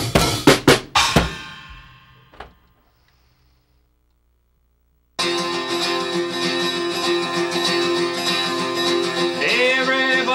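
A drum kit plays a few final loud strikes. The cymbal ring dies away over about two seconds, with one small tap. After about two and a half seconds of dead silence, an acoustic guitar starts playing chords abruptly.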